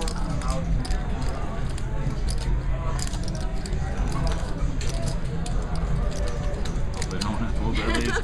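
Indistinct voices around a casino poker table over a steady low rumble, with frequent sharp clicks of clay poker chips being handled.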